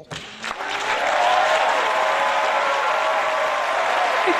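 Studio audience applauding, building up over the first second and then holding steady.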